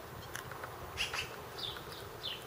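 A flying insect buzzing faintly.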